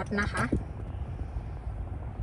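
Steady low rumble inside a car cabin: a 2016 Honda Accord's 2.4-litre engine idling with the climate control running.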